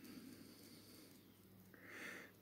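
Near silence: room tone with a faint low hum, and a soft breath near the end.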